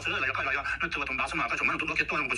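Speech only: one voice talking continuously.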